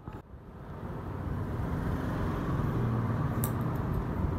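A steady low background rumble fades in over the first second. A single faint metallic snip of hair-cutting scissors comes about three and a half seconds in.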